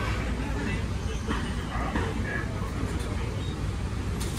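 Tour trolley bus idling at a stop, its engine a steady low rumble, with a few short faint sounds over it about one and two seconds in.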